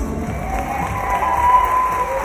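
Theatre audience cheering and applauding as the dance ends, with one long high whoop from about halfway through.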